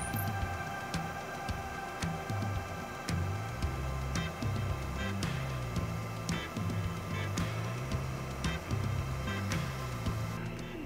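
Background music with a bass line that steps between notes and a steady beat.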